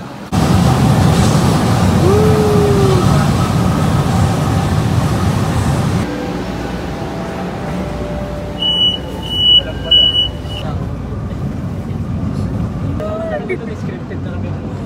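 Manila LRT train noise: a loud, steady rumble for the first six seconds, then a somewhat quieter run, with three short high beeps in quick succession a little past the middle, typical of the train's door-warning chime.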